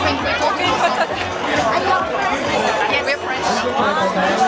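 Several people talking over one another in a crowd, with the chatter of more voices behind.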